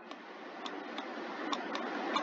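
A few light, scattered clicks from the pointing device used to handwrite on screen, over a steady faint hiss.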